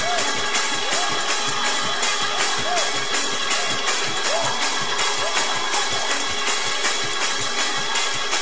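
Fast church praise-break music: drums and tambourines keeping a quick, even beat without pause.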